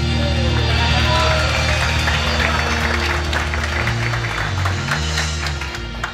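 Live church band (electric guitars, bass, keyboard and drums) playing the closing bars of a worship song, ending on a long held chord. Audience clapping joins in over the middle of it.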